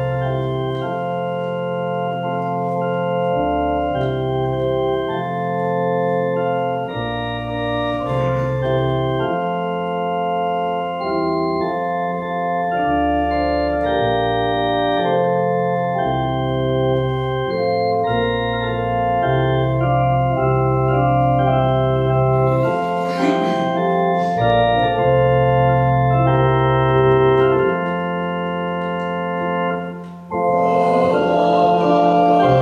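Church organ playing a hymn tune in sustained chords over a bass line that changes every second or two, the introduction to the hymn the congregation stands for.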